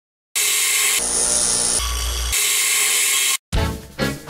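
A loud, rough machine noise that changes character twice and cuts off suddenly. Music starts right after, near the end.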